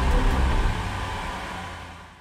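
Small hatchback car driving past and away, a steady engine and tyre noise that fades out near the end.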